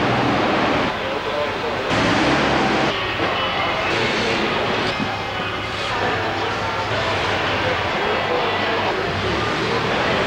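Steady warehouse din: a continuous machine-like drone with the overlapping, indistinct voices of many people working.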